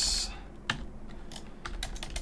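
Computer keyboard keys clicking as code is typed: a handful of separate keystrokes, several in quick succession near the end.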